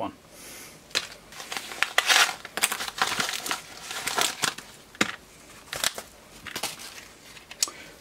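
Packaging crinkling and tearing as a small parcel is unwrapped by hand, in irregular rustles and sharp crackles.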